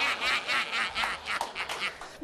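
Studio audience laughing in quick, choppy bursts after a punchline.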